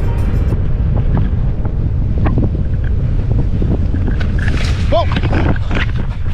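Heavy wind buffeting on the camera's microphone while riding a scooter over a rough road, with a few sharp knocks and rattles. About five seconds in, a startled shout of "whoa" as the rider goes down.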